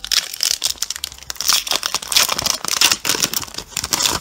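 Foil wrapper of a Pokémon TCG Burning Shadows booster pack being torn open and crinkled by hand: a dense run of quick, sharp crackles.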